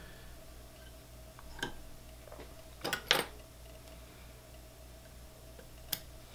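Faint, light clicks and ticks from handling at a fly-tying vise, a close pair near the middle and one just before the end, over a faint steady hum.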